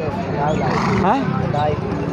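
A horse whinnies once, about half a second in, a high call lasting under a second, with men talking around it.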